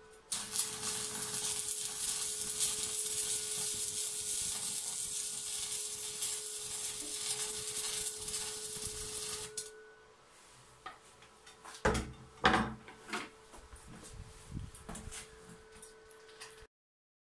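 Stick (MMA) welding arc from a small inverter welder burning a 2.5 mm stainless electrode on stainless square tube. It crackles and hisses steadily for about nine seconds, then the arc breaks off. A few sharp knocks and clatter of metal follow.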